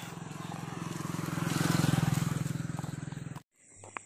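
A motor vehicle passing close by: its engine sound swells to a peak about two seconds in, then fades. The sound cuts off abruptly near the end.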